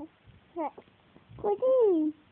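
A three-month-old baby cooing: a short coo about half a second in, then a longer coo near the end that falls in pitch.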